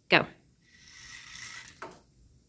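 Small toy car rolling across a lab tabletop, pulled by a string from a falling hanging weight: about a second of steady whirring from its wheels, cut off by a short knock as it is caught at the end of its run.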